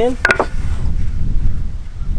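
Wind rumbling on the microphone, a loud, uneven low buffeting, after a brief knock near the start.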